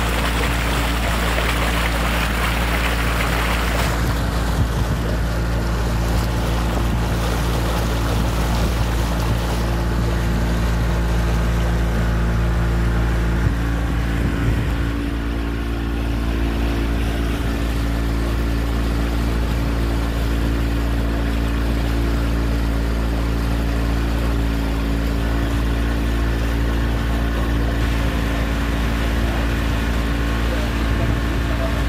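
Motor of a small tour boat running steadily, heard from on board, with water or wind rushing in the first few seconds; the engine note shifts slightly about halfway.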